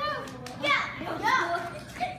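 Young children's voices talking and calling out excitedly in a room.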